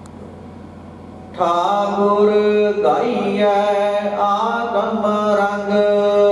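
Sikh devotional chanting begins suddenly about a second and a half in: a pitched, sustained chant with long held tones, loud over a steady low hum that is all there is before it.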